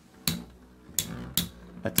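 Two Metal Fight Beyblades, MF Galaxy Pegasus F:D and Earth Pegasus W105BS, spinning in a plastic stadium, their metal wheels colliding in several sharp metallic clinks over a faint steady whir.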